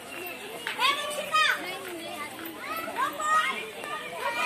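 Children's voices calling out excitedly in short, high-pitched cries, with a few wordless shouts about a second in and again near three seconds in.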